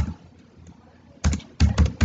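Keystrokes on a computer keyboard while typing code: one keystroke at the start, then a quick run of four or five keystrokes in the second half.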